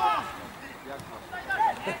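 Men's voices talking and calling out, with a short laugh near the end.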